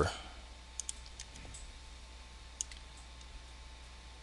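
Faint computer mouse clicks, a few scattered ones with a small cluster about a second in, over a steady low hum.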